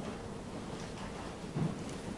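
Quiet room tone of a church sanctuary: a steady low rumble and hiss, with one soft thump about one and a half seconds in.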